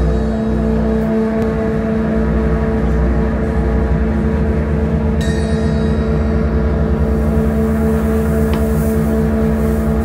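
Live doom metal band playing a slow, droning intro: distorted guitars hold one low note unchanged over a rumbling low end, with a cymbal crash about five seconds in.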